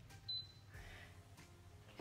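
A single short, high beep from the touch-control panel of a glass-top electric hob as a key is pressed to set the heat.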